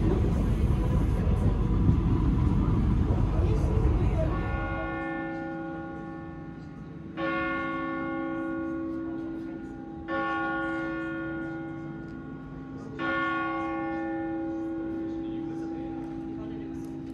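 Train running, a loud steady rumble heard from inside the carriage, for the first four seconds. Then a church bell tolls slowly, struck about every three seconds, each stroke ringing on and fading.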